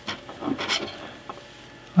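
Black plastic case parts being picked up and handled: two short rubbing, scraping sounds about half a second in, then quiet.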